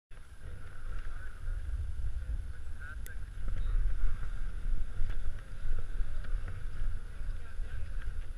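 Skis scraping and chattering over tracked, wind-crusted snow during a downhill run, with wind buffeting the GoPro's microphone in a low rumble that swells and falls.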